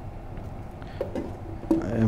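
A few faint clinks of steel bolts and nuts being gathered by hand from a plastic box, over a low background hum.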